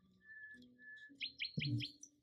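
Faint high chirping, likely a bird: three short steady whistled notes, then a quick run of about five rising chirps in the second half.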